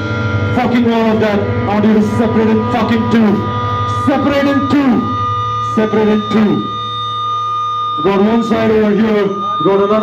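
A voice talking and shouting over a club PA between songs, with a steady amplifier hum and a held, ringing guitar tone underneath. The voice drops out for a few seconds in the middle, leaving the ringing tone on its own.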